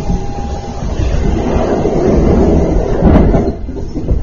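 Running noise inside a moving limited express train: a loud, steady rumble that swells in the middle, with a sharp knock about three seconds in.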